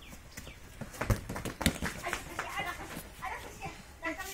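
A ball being kicked about by children on packed earth: two sharp knocks a little over a second in, about half a second apart, with children's voices calling.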